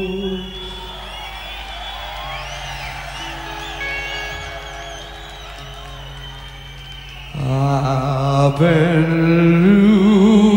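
Live slow hard-rock ballad: a held sung note ends about half a second in, leaving a quiet passage of electric guitar notes bent and shaken with vibrato over sustained keyboard chords. About seven seconds in, a loud male singing voice with wide vibrato comes back in over the band, climbing in pitch.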